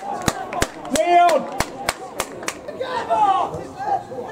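Spectators' voices shouting at a football match, with a fast, even run of about ten sharp clicks, about three a second, through the first two and a half seconds.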